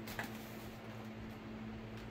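Quiet room with a steady low hum, and one small sharp click just after the start as a foam RC airplane fuselage is handled.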